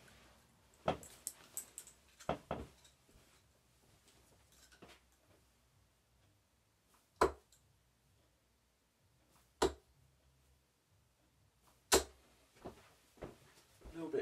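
Three 23-gram tungsten steel-tip darts thudding into a bristle dartboard one after another, about two and a half seconds apart. A few quieter knocks and clicks come before and after the throws.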